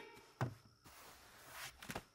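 Faint sound effects for a piece of fruit being thrown: a single soft knock about half a second in, then a quiet whoosh that swells and a few small clicks near the end.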